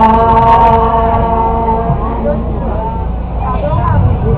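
Singing ending on one long held note, which stops about two seconds in; a voice then talks over the stage sound.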